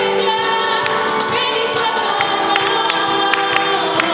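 Live gospel worship song: a woman's voice singing into a microphone over strummed acoustic guitar, with other voices singing along.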